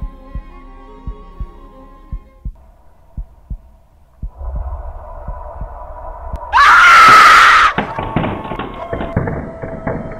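Heartbeat sound effect: paired low thumps, a lub-dub about every 0.7 seconds, for the first three and a half seconds. Then a low rumble of suspense music swells, and about six and a half seconds in a loud scream cries out for about a second, the loudest sound here. Several sharp hits and held tones follow.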